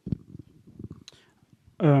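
Handheld microphone handling noise as it passes to the next speaker: a thump, then low rubbing and bumping for about a second. A man's voice begins speaking near the end.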